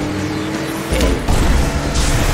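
Background music with a cartoon car-engine sound effect that comes in louder about a second in.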